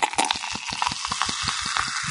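A steady crackling hiss with rapid small pops, like sizzling or fizzing.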